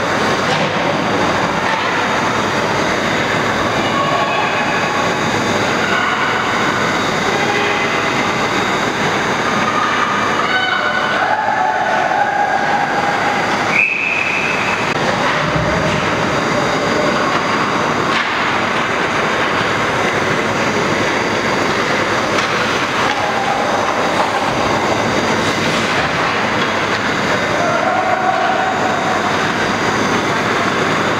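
Ice hockey rink noise during a youth game: a steady, loud wash of arena noise with short scattered voice-like calls. About 14 seconds in comes a sharp knock, then a single brief high tone.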